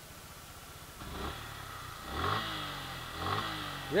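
Suzuki Gixxer SF 155's single-cylinder engine running at idle and revved twice with short throttle blips, about two and three seconds in, heard through its dual-barrel exhaust. It sounds very refined, with no odd noise from the engine.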